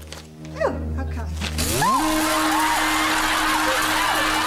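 A low held tone slides upward about two seconds in and then holds steady. At the same moment a studio audience starts laughing loudly and keeps laughing.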